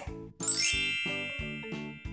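A magical sparkle sound effect: a quick upward sweep of bell-like chimes about half a second in, which then ring out and fade. Light background music with a steady plucked beat plays under it.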